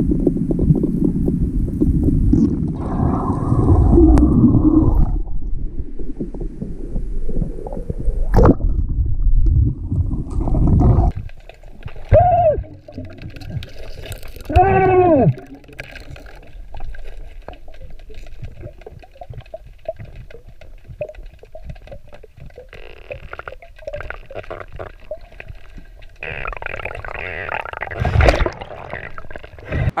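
Underwater sound from a camera submerged in a river: a loud, muffled rumble of water and the swimmer's movement for the first ten seconds or so, then quieter. Two short sounds that rise and fall in pitch come about twelve and fifteen seconds in.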